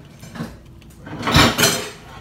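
A short, loud noisy scrape or rustle close by, about one and a half seconds in, from something being handled at the table, after a light tap near the start.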